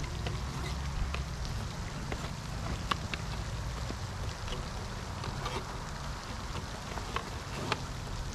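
Scattered light clicks and rustles as a plastic hand pump, its hose and a nylon carry bag are handled and packed. Behind them runs a steady splashing wash from a pond fountain, with a low rumble.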